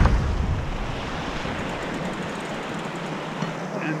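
Steady hiss of wind and water on a sailboat under way under spinnaker, with wind buffeting the microphone; the low rumble of the buffeting eases after about a second.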